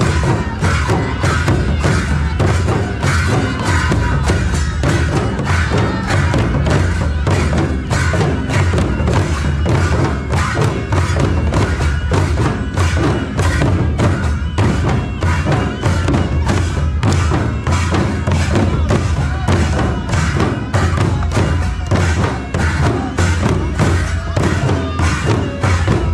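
Several large laced wooden barrel drums beaten together in a fast, steady, unbroken rhythm for a folk dance, with deep strokes throughout.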